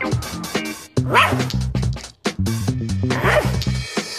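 Cartoon background music with a dog's short yelping barks twice, about a second in and again after three seconds.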